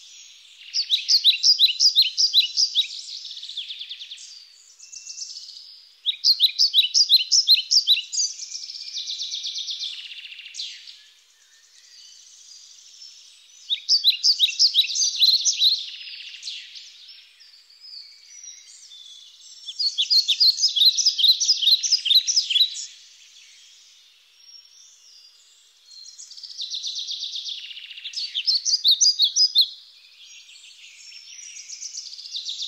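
A songbird singing the same song five times, about every six to seven seconds. Each song opens with a quick run of sharp, high notes for about two seconds and trails off into a softer, buzzy trill.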